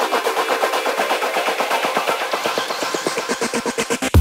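Electronic dance music in a build-up. The bass and kick drum are cut out, and a fast drum roll runs over pitched synth tones, growing stronger toward the end.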